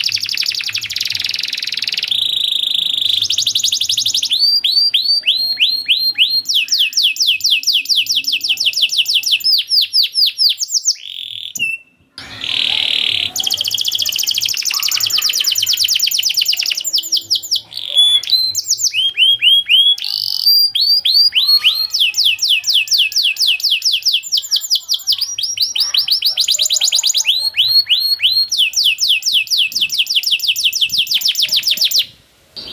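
Domestic canary singing a long song made of rolls of quick repeated falling notes, each roll a run of many identical notes at several per second, changing from one roll to the next. The song breaks off briefly about twelve seconds in, then carries on.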